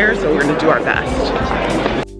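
Voices talking, with background music underneath.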